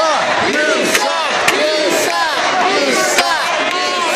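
Arena crowd shouting and yelling, many voices overlapping, with a few sharp cracks about a second, a second and a half, and three seconds in.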